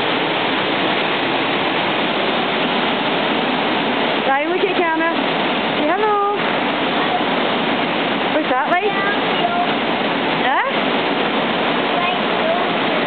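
Waterfall in full flow, a steady loud rush of falling water: the Black Linn Falls on the River Braan. A voice calls out briefly over it a few times, about four, six, nine and ten and a half seconds in.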